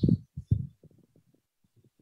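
A pause in a man's speech: the end of a word, a few soft low thumps in the first second, then about a second of near silence.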